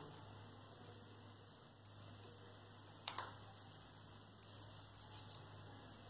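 Near silence: a faint steady low hum, with one soft click about three seconds in and a few faint ticks near the end.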